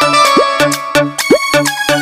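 Electronic keyboard playing a Bhojpuri song melody over a steady electronic dance beat, with a bass note and a quick upward-swooping sound repeating about twice a second.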